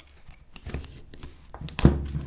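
Carving knife slicing into a block of Ficus benjamina wood: a series of short, crisp cuts and snaps, the loudest near the end.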